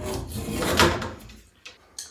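Rubber screen spline being pulled out of the groove of a metal window-screen frame: a sliding scrape lasting about a second that dies away.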